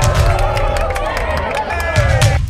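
Pump-up music with a heavy bass beat, with a crowd of football fans cheering and yelling over it for about two seconds.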